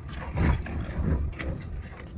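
Maruti Omni van driving over a rough dirt track, heard from inside the cab: a low engine and road rumble with the body and fittings rattling, and two harder jolts about half a second and a second in.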